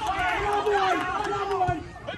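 Indistinct speech: a voice talking among spectators, the words not made out.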